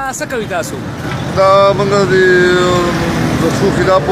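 Roadside traffic noise, a steady low rumble of vehicles, with people's voices. In the middle there is one long, steady, pitched tone lasting about a second and a half that sinks slightly as it ends.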